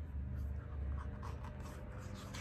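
Faint scratchy rustling of a hardcover picture book being handled, over a low steady room hum.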